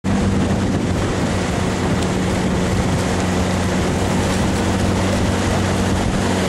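Motorboat engine running at an even, steady drone, over the continuous rush of water along the hull and wind.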